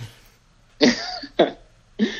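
A man coughing twice, two short coughs a little over half a second apart about a second in.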